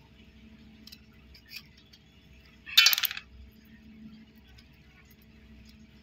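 A kitchen knife clinks once against a stainless steel plate about three seconds in, a short, bright metallic jingle. Around it are a few faint clicks of the knife cutting into a small bitter gourd.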